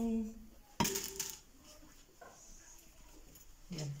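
One sharp click about a second in, with a short ringing tail, over faint room noise; a woman's voice trails off at the start and speaks again near the end.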